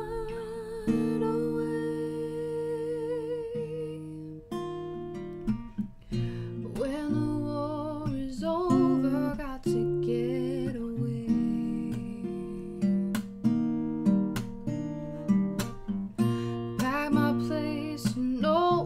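Acoustic guitar strummed in a slow song, with a woman's voice holding a long wavering note over the first few seconds, then singing softly over the chords later on.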